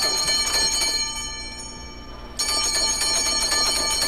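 Bright, shimmering bell chime ringing with many high tones, fading away between one and two seconds in, then struck again about two and a half seconds in: a radio show's chime sound effect between segments.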